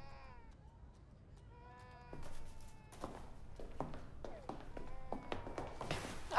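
Faint high-pitched voice sounds, first a short falling one and then a held one, followed by a run of light clicks and knocks.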